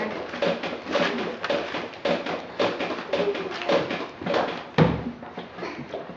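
A pumpkin being carved: short, irregular scraping and cutting strokes of a carving tool in the pumpkin, several a second, with one louder knock about five seconds in.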